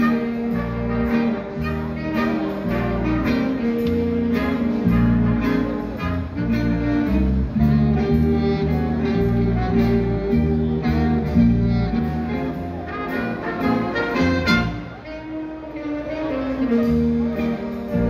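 Live big-band jazz: a jazz band with a saxophone section and brass playing a tune over a steady beat and a moving bass line.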